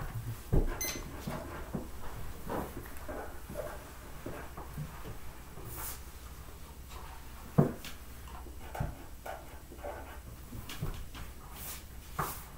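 Quiet room filled with scattered light knocks, taps and rustles of children working with pencils and paper at a table, with one sharper knock about seven and a half seconds in.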